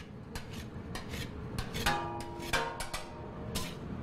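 Metal spatula scraping and tapping on a steel griddle as it cuts a thin pancake sheet into pieces, a string of short scrapes and clicks. About halfway through comes a brief metallic ringing squeal of metal on metal.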